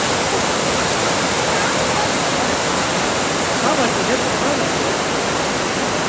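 Steady, loud rush of whitewater as a waterfall pours into a rocky pool.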